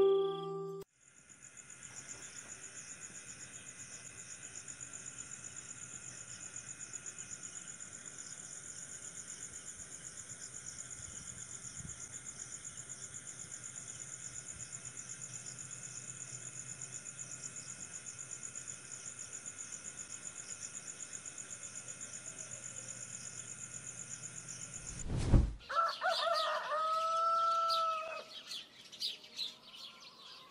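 Night-time crickets chirping in a steady, fast-pulsing high chorus. About 25 seconds in it cuts off with a sudden thump, and a rooster crows once amid bird chirps, marking morning.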